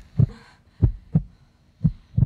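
A heartbeat sound effect: pairs of low thumps, lub-dub, about once a second, over a faint steady hum.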